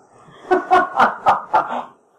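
A person laughing: a quick run of short 'ha' bursts starting about half a second in and lasting just over a second.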